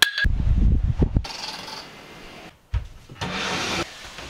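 A sharp click, then bedding rustling and a low thump as someone climbs onto a bed with loose sheets.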